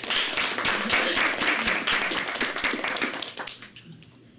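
A small audience clapping, a dense patter of hand claps that thins and dies away near the end.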